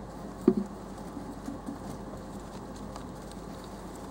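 Hamsters lapping cola from a ceramic dish, a soft patter of small wet ticks, with one sharp knock about half a second in.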